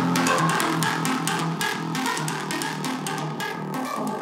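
Electronic dance track in a breakdown: the kick drum and bass are cut out, leaving a repeating melodic synth line over fast ticking percussion, the level slowly falling.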